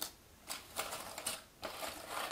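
Glossy cardboard jigsaw puzzle pieces stirred by hand in their cardboard box, rustling and clicking against each other in a few short bursts.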